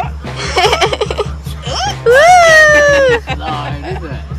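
A young child giggling and then letting out a long, high squeal of delight about two seconds in, falling in pitch at its end. Background music with a steady beat plays throughout.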